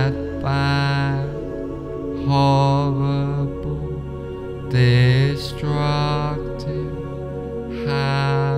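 Meditation background music: long held, chant-like tones over a steady low drone, swelling in one after another about five times.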